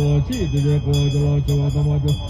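A low male voice chanting a Buddhist prayer, holding steady, repeated tones and sliding between them at the syllable breaks, over a quick steady ticking beat.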